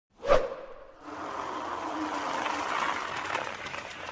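Intro sound effect: a sharp hit with a short ringing tone, then a noisy whoosh that swells for about two seconds and fades away.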